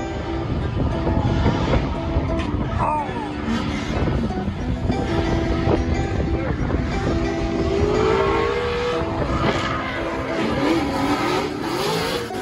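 A drift car's engine revving and its rear tyres spinning as it slides past, with a rising rev about eight seconds in. Background music with held notes plays over it.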